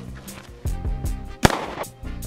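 A single 9mm pistol shot about a second and a half in, over background music.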